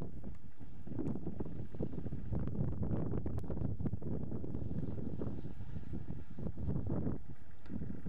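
Wind buffeting a camcorder microphone: a steady low rumble with irregular gusts.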